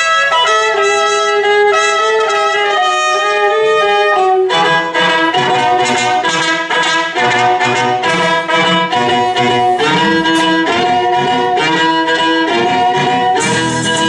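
Violin and trumpet playing a mariachi-style instrumental introduction: long held notes at first, then a quicker rhythmic tune from about four and a half seconds in. Acoustic guitar strumming comes in near the end.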